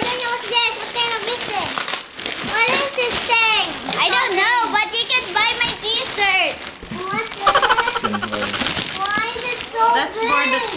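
Excited children's voices chattering and exclaiming over one another, high-pitched and lively.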